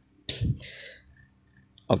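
A single short, sudden breathy burst from a person close to the microphone, about a quarter second in, dying away within about half a second.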